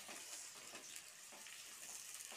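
Sliced onions sizzling faintly in hot oil in a metal pot while a silicone spatula stirs them, its strokes brushing through a few times; the onions are being fried gently, only to soften, not to brown.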